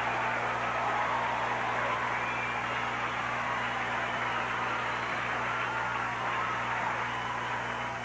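Studio audience applauding steadily, over a low electrical hum from the old recording.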